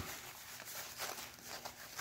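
Faint rustling of Gore-Tex jacket fabric being handled as the rolled hood is pushed into the collar, with a few soft brief knocks around the middle.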